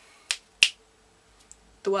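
Two short, sharp clicks about a third of a second apart, the second louder.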